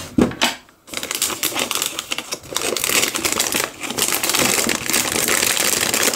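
Plastic wrapper of a dog dental-stick treat crinkling and rustling as it is handled and opened, a dense run of crackles starting about a second in.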